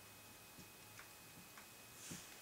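Faint taps of a marker tip dotting a whiteboard: three or four soft ticks spread over two seconds, over near silence.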